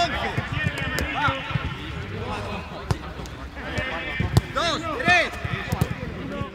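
Football kicked again and again in quick passes on grass: a run of sharp thuds, with players' shouts between them.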